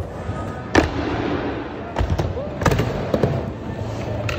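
Skateboard wheels rolling around a skatepark bowl: a steady rumble broken by several sharp clacks.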